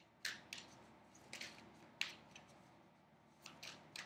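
Deck of oracle cards being shuffled by hand: about half a dozen faint, short, papery flicks at irregular intervals.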